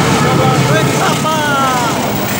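A diesel-hauled freight train of empty cement wagons passing close by, with a loud, steady rumble and clatter of its running gear, and excited voices calling out over it.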